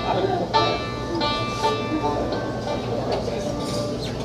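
Acoustic string instruments, a banjo among them, playing loose plucked notes that ring out, with no steady beat, over murmuring crowd chatter.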